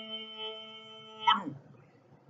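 A man's Quran recitation voice holds the drawn-out last syllable of a verse as one steady chanted tone, fading slowly. About 1.3 seconds in it breaks off with a short falling slide in pitch.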